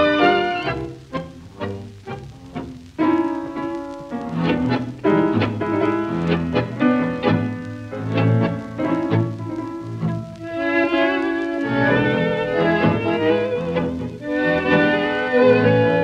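Recorded tango music led by violins over a bowed bass line: a run of short, sharply accented chords in the first few seconds, then longer, held string phrases.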